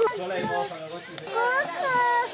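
Speech only: a young child's high voice calling "kuku" in a game of peekaboo.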